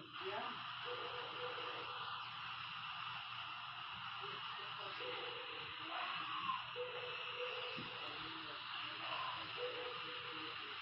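A dense, muddled wash of many video soundtracks playing over one another: a steady hiss with faint broken tones and scraps of voices, none standing out.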